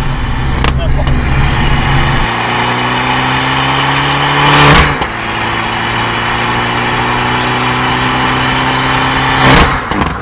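The Abarth 500C esseesse's 1.4 turbo four-cylinder accelerates hard through a four-outlet Monza exhaust, its revs climbing steadily in each gear. At each of two upshifts, about five seconds in and again near the end, the exhaust gives a loud crack.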